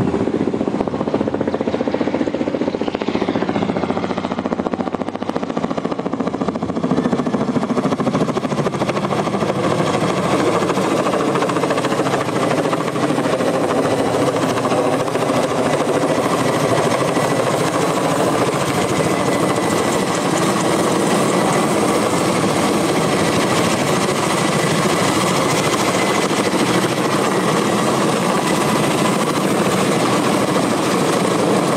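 Helicopter hovering close overhead, its rotor and turbine running loud and steady as it lowers a water bucket on a long line to scoop from a pond. The noise swells over the first several seconds as it comes in overhead, then holds.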